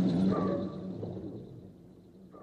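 Pepelats quick-takeoff sound effect dying away: a steady hum fades out over about a second and a half. A short chirp comes about half a second in.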